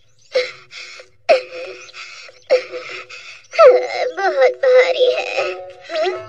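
A cartoon character's voice wailing in about four bursts, over background music.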